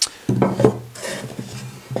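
Wooden boards being handled and set down on a wooden workbench: a sharp knock at the start and a couple more knocks about half a second in, with a low hummed voice sound under the rest.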